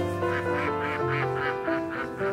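Mallard ducks quacking in a quick run of calls, about four a second, over soft piano music.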